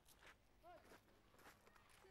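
Near silence: faint outdoor ambience with a few soft scuffs and a brief, faint voice-like call about two-thirds of a second in.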